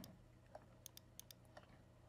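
Faint, scattered clicks of a computer mouse and keyboard, about half a dozen short clicks over two seconds, against near-silent room tone.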